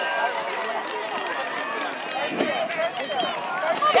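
Overlapping, distant shouts and calls from spectators and young players at a soccer match, none of them close to the microphone.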